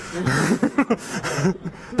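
A roomful of people laughing together at a joke, many voices chuckling at once, fading out just before speech resumes near the end.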